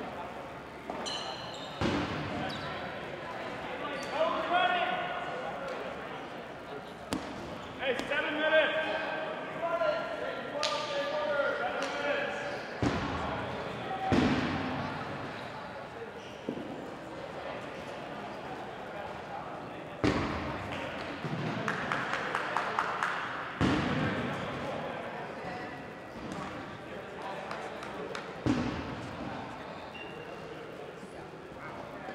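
Voices calling out across a large echoing gymnasium, with several sharp thumps of dodgeballs bouncing on the hardwood floor spread through.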